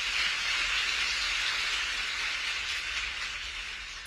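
Audience applauding, steady and tapering off slightly toward the end.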